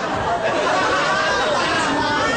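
Several people talking over one another at once, a steady babble of voices with no single clear speaker.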